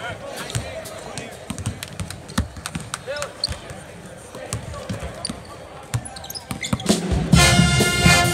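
Several basketballs bouncing on a hardwood court in a large arena, an irregular patter of dribbles and bounces with faint voices under it. About seven seconds in, loud music starts up.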